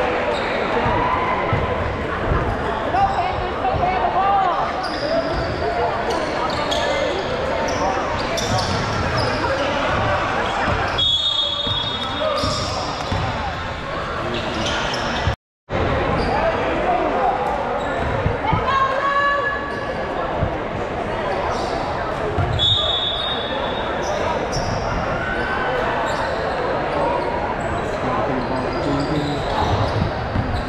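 Basketball game in a large gym: a ball bouncing repeatedly on the court amid the voices of players and spectators, echoing in the hall, with a few short high squeaks.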